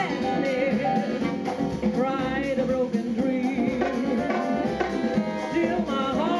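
Live jazz band playing a samba: a woman singing over saxophones, congas and drum kit.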